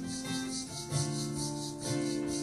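Live contemporary worship band playing a song's instrumental intro: guitar and keyboard chords over bass notes that change about one and two seconds in, with a steady high percussion pulse of about four strokes a second.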